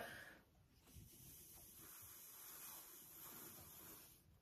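Faint, steady breath blown by mouth across wet acrylic paint on a canvas to push the paint outward, as in a Dutch pour, starting about a second in.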